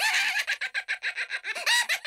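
Cartoon cockroach cackling: a rapid string of short, high-pitched, hen-like cackles that rise and fall in pitch, loudest near the end.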